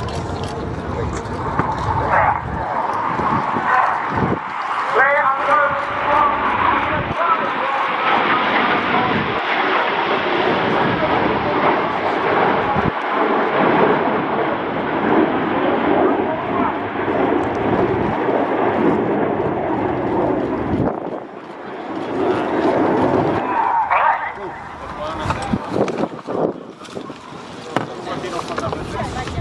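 Jet noise from the Red Arrows' BAE Hawk T1 trainers and their Adour turbofans during a display, a broad rushing sound that swells a few seconds in, holds, and falls away about two-thirds of the way through. A voice is heard now and then over it.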